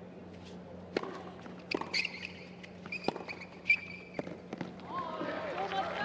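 Tennis ball struck back and forth in a short rally on a hard court: a few sharp racket hits roughly a second apart, with high squeaks from shoes on the court in between.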